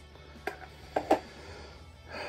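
Three short, soft smacks of a pipe smoker's lips and mouth while tasting the smoke, about half a second in and twice close together around one second in, over a steady low hum.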